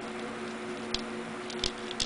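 A few light clicks and crinkles from small painted pieces of dryer-vent tubing being picked over and handled by fingers, about a second in and again shortly before the end, over a faint steady hum.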